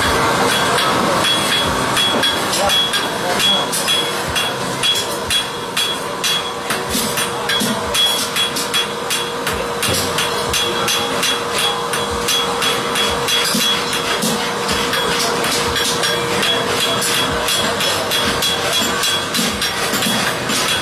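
Farrier's hand hammer striking a red-hot steel draft-horse hind shoe on an anvil, a rapid, steady run of blows throughout, each with a high metallic ring.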